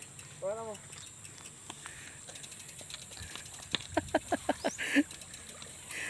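Mountain bikes being handled by hand: a run of irregular clicks and light knocks, freewheel ticking among them, starting about four seconds in, over a quiet outdoor background. A brief voice-like sound comes shortly after the start.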